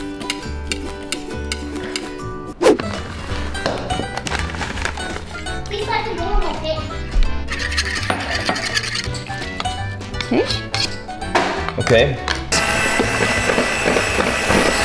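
A wire whisk and a fork clinking rapidly against mixing bowls as eggs and cake batter are beaten, over background music. Near the end, a steady whirring noise sets in from an electric hand mixer starting up.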